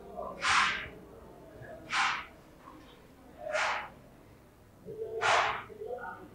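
Felt-tip marker writing on a whiteboard: four short swishing strokes about a second and a half apart.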